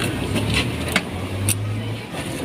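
An engine running with a steady low hum, with a few sharp clicks over it.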